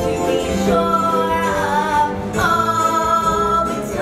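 A show tune sung live on stage with accompaniment: a singer holds two long notes, one starting just before the first second and a longer one starting near the middle.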